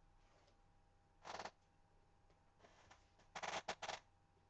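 Cardstock sheets being handled: a short papery rustle a little over a second in, a faint one near three seconds, then a louder cluster of three quick rustles near the end as the card is lifted and folded.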